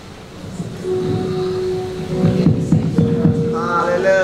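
Keyboard playing held notes that come in about a second in, with a low throbbing underneath. A man's voice rises near the end.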